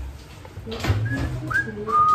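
A man whistling a tune through pursed lips: a few short notes, then a longer held note near the end.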